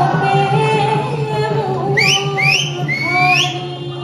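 A woman singing long held notes into a microphone with live band accompaniment. About two seconds in, three short rising whistles cut across the song.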